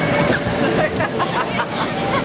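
Children's voices in short snatches over a steady rushing noise, typical of the electric blower that keeps an inflatable slide inflated, with a brief hiss near the end.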